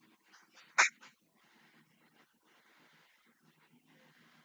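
A woman's short stifled giggle, one brief burst about a second in, followed by only faint background sound.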